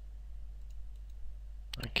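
Computer mouse clicks over a steady low electrical hum, with a few sharper clicks close together near the end.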